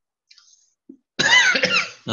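A man coughing into his fist: a short, loud burst a little over a second in, after a faint breath.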